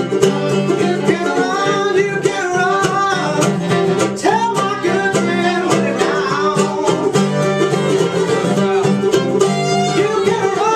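Acoustic bluegrass trio playing live: acoustic guitar, mandolin and fiddle together, with bending, sliding melody lines over a steady rhythm.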